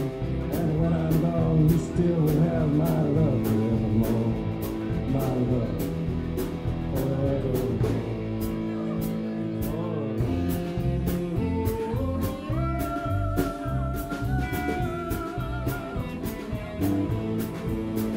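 Live band playing a rock-and-roll song: electric guitar, electric bass and drums with a steady cymbal beat, and a woman singing over them.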